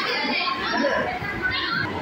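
Many children's voices chattering and calling out at once, with the echo of a large hall.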